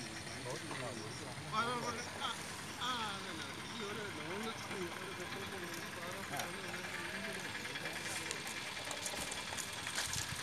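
Voices talking over a steady background hum of the car on the move.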